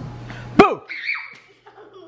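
A child's sudden loud shout about half a second in, its pitch falling sharply, a jump-scare, followed by brief high laughter.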